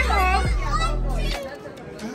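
A young child's high-pitched voice, sliding up and down in pitch without clear words, loudest in the first half second, with a low rumble underneath that stops about a second and a half in.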